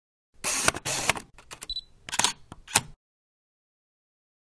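Camera shutter sound effect: a DSLR's shutter clicking through a run of several shots, with a brief high beep about halfway through.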